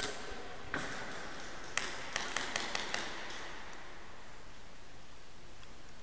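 Airsoft guns firing: a few separate sharp cracks in the first two seconds, then a quick string of about five shots roughly a fifth of a second apart, each with a short echo.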